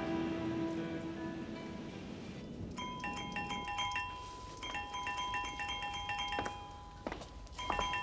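Background music fades out, then an electronic telephone ringer trills in repeated bursts of a second or two each, three rings in all.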